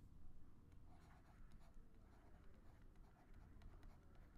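Near silence with faint scratching and light ticks of a stylus writing on a tablet.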